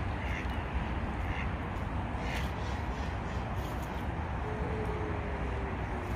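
Three short, harsh bird calls in the first two and a half seconds, crow-like caws, over a steady low rumble of outdoor background noise.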